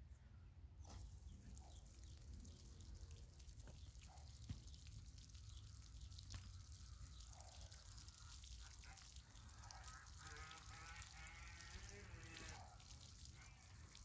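Near silence: faint outdoor background, with faint distant animal calls in the second half.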